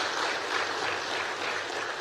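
An audience applauding, steady clapping from many people.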